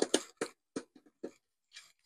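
Short clicks and knocks, about half a dozen, unevenly spaced and loudest at the start, from a screwdriver and hands working on the plastic battery-pack housing as a screw is backed out.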